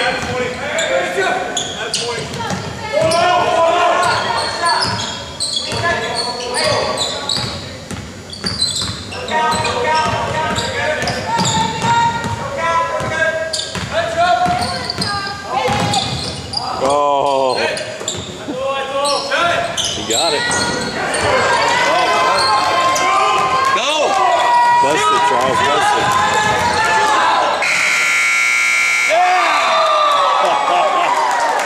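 Basketball game in a large gym: a ball bouncing on the hardwood court, shoe squeals and voices echoing through the hall. Near the end a loud steady tone sounds for about a second and a half.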